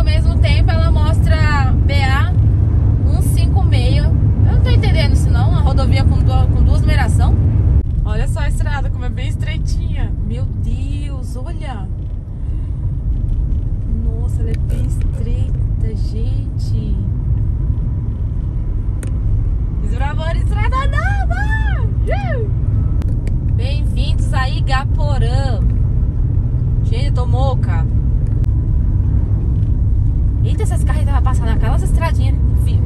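Steady low road and engine noise heard inside a moving car's cabin, dropping suddenly about eight seconds in and building back up. A person's voice comes and goes over it.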